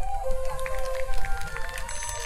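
Mixed choir singing a Christmas carol in held chords over a low rumble.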